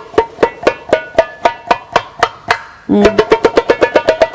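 Egyptian tabla (darbuka goblet drum) played by hand in a demonstration of its strokes: single sharp ringing hits about four a second, breaking into a quicker run of strokes about three seconds in.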